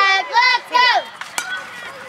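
High-pitched children's voices chanting a cheer that stops about a second in. About a second and a half in comes a single sharp crack of a bat hitting a pitched baseball.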